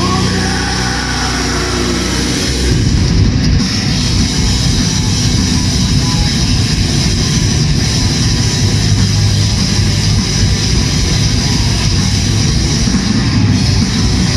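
Live rock band playing an instrumental passage at full volume: electric guitars, bass guitar and drum kit, with no vocals.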